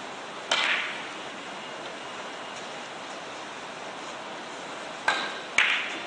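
Carom billiard balls clicking: one sharp, ringing click about half a second in, then two more about half a second apart near the end.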